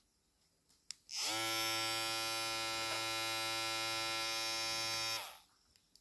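Kuliland cordless hair trimmer with an Andis blade: a click about a second in, then the motor and blade start up and run with a steady buzz for about four seconds before it is switched off and winds down.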